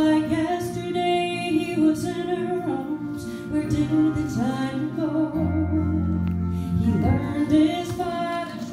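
A woman sings a gospel song into a microphone over instrumental accompaniment, which holds a long, steady low chord in the second half.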